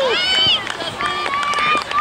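Several children shouting over one another in high voices, with one long drawn-out call in the second half.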